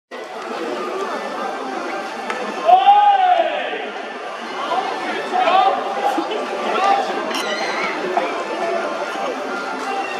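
Scattered voices of players and spectators chattering and calling out at a baseball game between pitches, with one long call that rises and falls in pitch about three seconds in.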